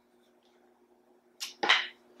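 A particleboard bookcase panel being handled and set down: a light tap about one and a half seconds in, then a louder wooden knock right after. Before that, only a faint steady hum.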